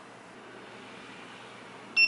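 Faint room hiss while the power button is held down, then right at the very end the ViFLY Beacon lost-model alarm's buzzer starts a quick run of short, high quiet beeps: the power-off signal that it has been switched off.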